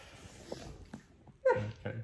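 A dog gives a short high yelp about one and a half seconds in, dropping quickly in pitch.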